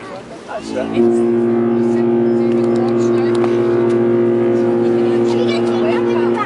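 Queen Mary 2's ship's whistle sounding one long, deep, steady blast that starts about a second in.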